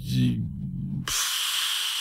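A man's short, hesitant hum, then a steady hissing breath lasting about a second.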